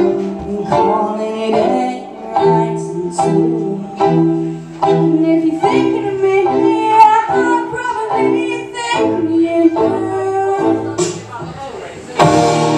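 Violin bowed live in short, rhythmic phrases over a low bass accompaniment.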